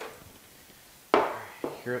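A glass baking dish of brownies set down on a cloth potholder on a table: a sudden loud knock about a second in, dying away quickly, then a lighter knock.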